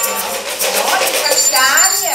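Small hand rattles shaken in quick clicky rattling, over the voices of a woman and children in a children's rattle song.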